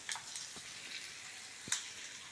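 Hot tempering oil with mustard and sesame seeds sizzling faintly as it is poured from a small steel pan over khandvi rolls, with a couple of sharp clicks.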